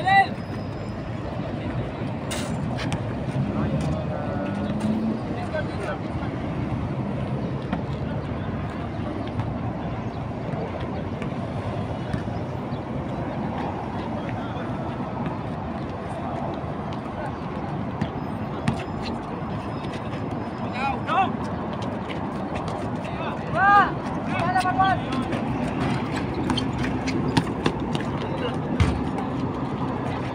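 Players' voices shouting and calling out during an outdoor basketball game, with a few louder calls near the middle and end. Underneath is steady road-traffic noise, with occasional sharp knocks.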